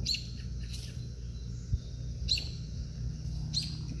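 A bird chirping outdoors: three short, high chirps, each dropping quickly in pitch, spread a second or more apart over a steady low background noise.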